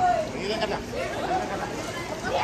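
Many overlapping voices of children and adults chattering while playing in a crowded swimming pool, several of them high-pitched.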